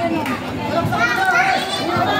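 Crowd of basketball spectators shouting and chattering over one another: many voices at once, some of them high-pitched.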